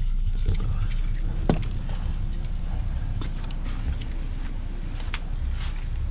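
Handling noise from a camera being moved through a car's back seat and out the open door: a steady low rumble with scattered light clicks and rattles.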